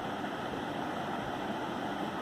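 Steady background hiss with no distinct sound events, the same even noise that sits under the narration.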